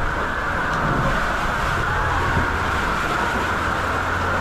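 Steady rush of water running down a waterslide's flat runout channel.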